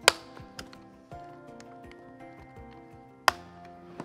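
Two sharp clicks about three seconds apart, the first the louder, while a Graco SlimFit3 LX car seat is reclined and its seat pad's snaps are fastened underneath. Soft background music plays throughout.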